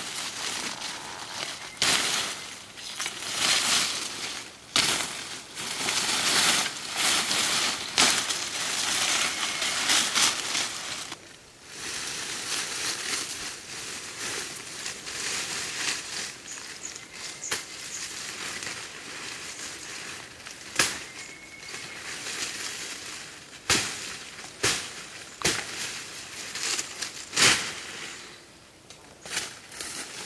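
Leafy branches being chopped with a machete and dragged through dense foliage: irregular sharp chops and snapping stems over steady rustling of leaves.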